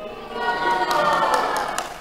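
A group of audience voices calling out together in a brief cheer, swelling and then fading over about a second and a half.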